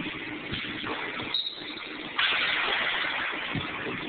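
A few dull thuds on a hardwood gym floor, with a short high squeak like a sneaker about a second in, over a steady noisy background. About two seconds in, a sudden louder rush of noise lasts about a second.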